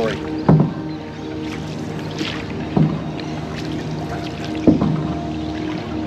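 Canoe paddle strokes through the river water: three strokes about two seconds apart, over steady background music.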